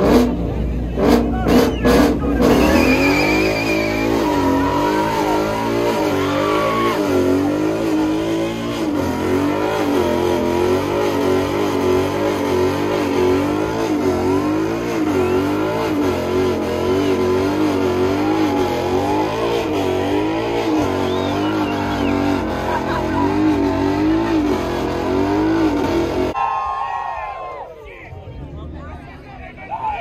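Ford Mustang GT's 5.0 V8 doing a burnout: the engine is held at high revs, its pitch wavering up and down, with the rear tyres spinning and squealing on the pavement. A few sharp cracks come in the first two seconds, and the engine sound drops away abruptly near the end.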